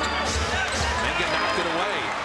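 Basketball game broadcast sound: steady arena crowd noise and on-court ball and play sounds, with voices over it.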